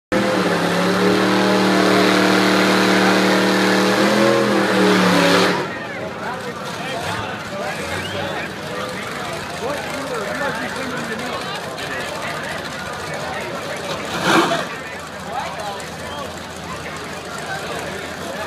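Drag-racing engines held at high revs at the start line: a loud, steady drone that cuts off suddenly about five and a half seconds in. After it, crowd chatter fills the rest, with one brief loud burst about fourteen seconds in.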